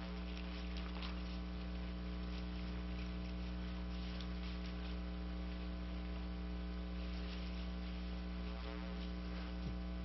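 Steady electrical mains hum: a low, unchanging buzz with evenly spaced overtones.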